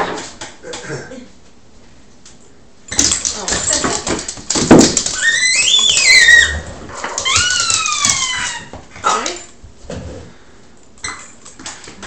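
French Bulldog whining while its toy is tugged from its mouth: a few high cries gliding in pitch, one rising then falling and two falling away, among scuffling noise.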